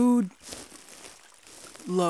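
A woman's voice making two short wordless sounds, one at the start and one near the end, the second falling in pitch. Faint crinkly rustling runs underneath.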